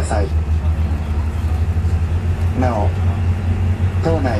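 Ferry engine droning steadily, heard from inside the passenger cabin, with a brief snatch of voices about two and a half seconds in.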